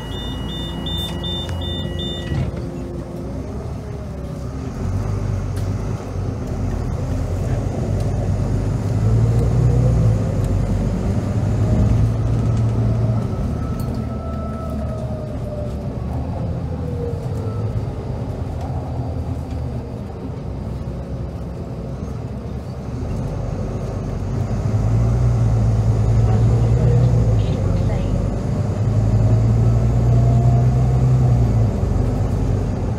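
Volvo B9TL bus's diesel engine heard from inside the lower deck, pulling hard: the engine note climbs, drops back around the middle, then climbs again near the end, over a steady low rumble. A quick string of high beeps sounds at the very start.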